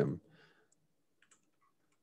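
A few faint computer-keyboard keystrokes, scattered irregularly over the first second and a half, after the last word of speech ends right at the start.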